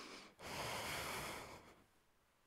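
A woman breathing audibly through the nose: a breath running into the start, then a louder, longer breath from about half a second in that fades away near the end, as she relaxes between yoga twists.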